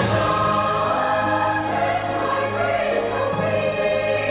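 Background music: a choir singing slow, held chords over a steady low note.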